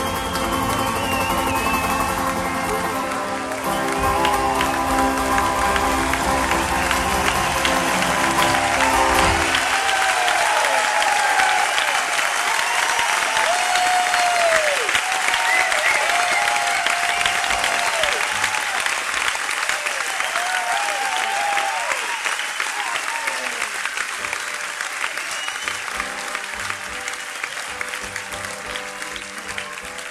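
A live song on acoustic guitar, with a steady low part underneath, ends about nine seconds in, and a concert-hall crowd breaks into applause and cheering with whistles. The applause slowly fades, and faint instrument notes start up again near the end.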